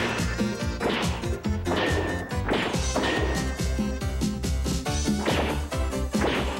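Cartoon armor-up sequence soundtrack: driving music with a crash or whack sound effect roughly once a second, several of them led in by a falling swoosh.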